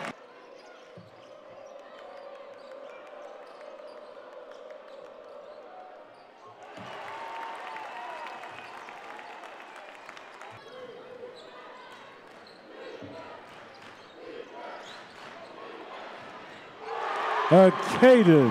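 Basketball bouncing on a hardwood court a few times, each bounce a faint knock under the hollow background noise of a large arena. Near the end a loud voice breaks in.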